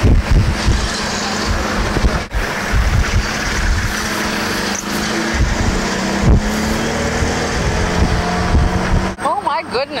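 Road vehicle driving along a street, heard from on board: a steady engine hum and road noise with uneven low thumps. A voice starts up near the end.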